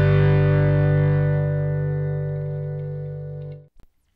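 Final chord of a rock song on distorted electric guitar, held and ringing out, slowly fading, then cut off abruptly a little before the end, followed by a faint click and near silence.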